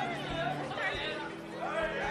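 Indistinct chatter of several overlapping voices, with steady low tones held underneath.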